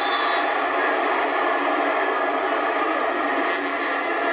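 Stadium crowd noise from a televised football game, a steady wash of cheering after a quarterback is hit on third down. It is heard thinly, with no bass, through a TV speaker.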